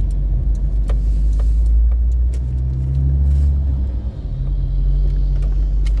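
Car engine and road noise heard from inside the cabin while driving: a steady low rumble with an engine hum, dipping briefly about four seconds in.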